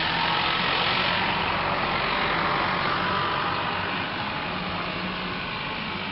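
A vehicle's engine running nearby, loudest about a second in and then slowly fading.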